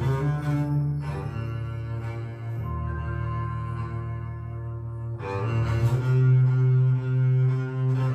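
Music of deep bowed strings playing slow, long held notes, played back through a pair of small homemade two-way speakers (a 10 cm Kenwood full-range driver with a super tweeter). A new, louder note swells in about five seconds in.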